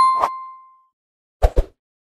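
Subscribe-animation sound effects: a bell-like ding fades out over the first second, with a sharp click as it starts. Two short knocks follow in quick succession about a second and a half in.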